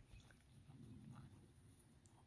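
Near silence, with a few faint footfalls of a horse walking on grass, about two steps a second.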